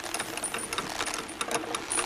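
Rapid, irregular mechanical clicking and rattling, a sound effect of ropes and chains being hauled taut.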